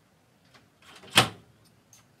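A wooden front door's lock being worked by hand: a short scrape, then one loud clunk about a second in.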